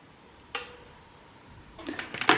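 A single light, sharp click about half a second in, over quiet room tone, with faint small handling sounds near the end.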